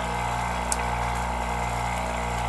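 A steady low mechanical hum, with one faint click a little under a second in.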